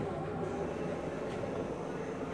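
Power wheelchair ramp of a VMI Northstar conversion Chrysler Pacifica minivan deploying, its motor running steadily.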